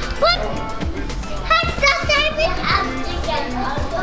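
Young children's high-pitched playful cries and shouts, a short one near the start and a cluster around the middle, over steady background music.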